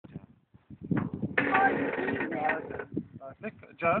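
Voices: a drawn-out, wordless call through the middle, then a short spoken word near the end.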